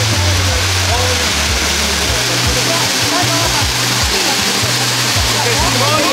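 Party music with a bass line and guests' voices, over a steady loud hiss from cold spark fountains spraying.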